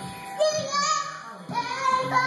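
A toddler's high voice singing out in drawn-out notes, starting about half a second in and again near the end.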